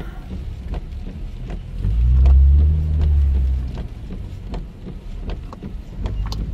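Road and engine noise heard from inside a moving car, a steady low rumble that swells louder about two seconds in and eases off again before four seconds. Faint scattered light ticks sit over it.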